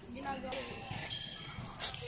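Faint chatter of people talking, with a sharp knock near the end, typical of a tennis ball bouncing on a hard court.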